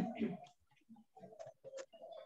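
A spoken phrase trails off, followed by faint, scattered short sounds and light clicks.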